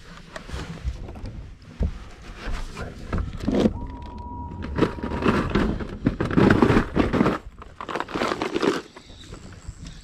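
Rummaging in a bass boat's carpeted deck storage compartment: the lid lifted and plastic tackle boxes and gear knocking, clattering and rustling, busiest a little past halfway.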